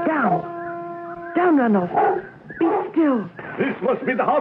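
Drawn-out animal howls: each holds a steady note and then slides steeply down in pitch. Near the end they give way to a run of quick yelping cries.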